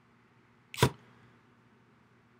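A single short, sharp click or knock about a second in, against quiet room tone.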